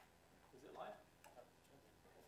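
Near silence in a hall: faint, distant voices murmuring, with a few faint clicks.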